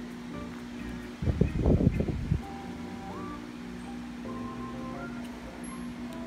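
Background music: a simple light melody over a steady low drone. About a second in, a loud rustling bump lasts about a second.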